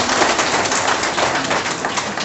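Crowd applauding: a steady patter of many hands clapping.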